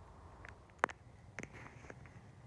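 A few light clicks and taps over a low, steady background rumble, the sharpest click coming a little under a second in.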